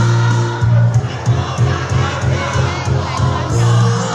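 A choir of women and a few men singing a song together through stage microphones, over musical accompaniment.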